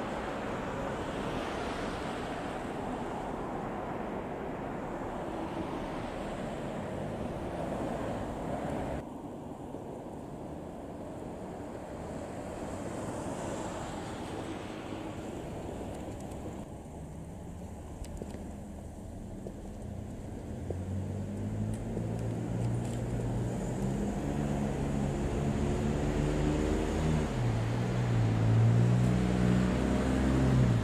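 Outdoor street sound of road traffic, with wind on the microphone. In the last third a motor vehicle's engine comes in close and grows louder, its pitch stepping up and down, and it is loudest near the end.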